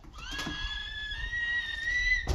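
A young child's long, high-pitched squealing whine, held for nearly two seconds on one pitch that edges slightly upward near the end.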